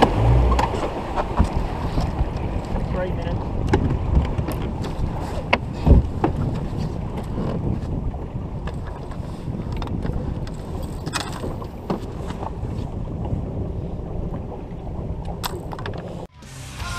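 Water moving along a fibreglass bass boat's hull with wind on the microphone, and occasional sharp knocks, the loudest about six seconds in.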